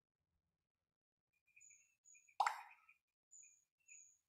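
A single sudden short sound about halfway through, dying away within half a second, over faint, repeated high chirps at two pitches.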